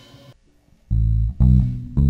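Electric bass guitar playing three low notes on its own, each left to ring and fade, starting about a second in after the band's music has died away into a brief near-silent gap.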